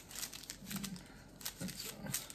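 Small paper stevia packets crinkling and tearing as they are opened and shaken out, in faint, scattered rustles.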